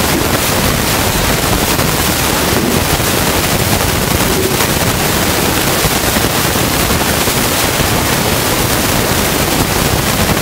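Loud, steady hiss of static-like noise that fills the whole sound evenly, with no speech and no changes.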